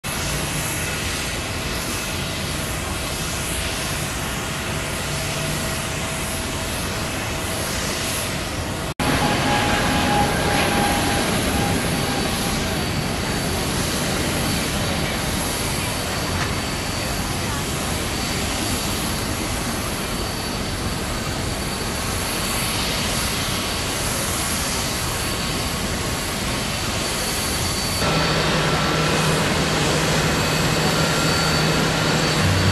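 Jet airliner engines at high power as an Airbus A321neo climbs out after take-off: a steady rushing noise that gets louder after a sudden break about nine seconds in. Near the end the sound changes to a Boeing 747 taxiing, with a low steady hum under the engine noise.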